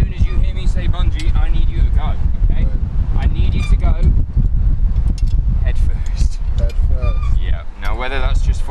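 A man's voice talking, over a steady low rumble of wind on the microphone.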